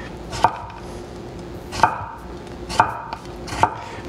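Knife slicing English pickling cucumbers into thin rounds on a wooden cutting board: four knocks of the blade against the board, about a second apart.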